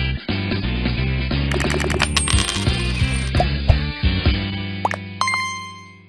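Short upbeat advertising jingle with sound effects laid over it: a run of sharp clicks about two seconds in and bright ringing tones a little before the end. It fades out near the end.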